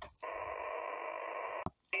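Steady hiss from a portable QRP amateur radio transceiver's speaker while it receives between transmissions, cut off by a click near the end; a station's voice then starts coming through the radio.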